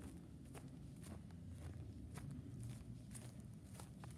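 Footsteps on grass and dirt, about two steps a second, faint and even.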